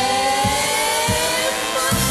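Live pop music with orchestra: the singers hold one long note together, its pitch creeping slightly upward, over the band, with a few short drum strikes that drop in pitch.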